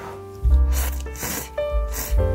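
Slurping from a cup of instant noodles: two noisy slurps, about half a second and a second in, over background music with held notes and a steady bass.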